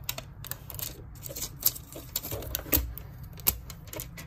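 Clear plastic protective film being peeled and crinkled off a sound card's glossy faceplate, crackling in irregular sharp clicks.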